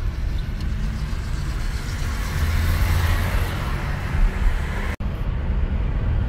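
Car cabin noise while driving: steady engine hum under tyre and road rumble, swelling a little a couple of seconds in. The sound cuts out for an instant about five seconds in.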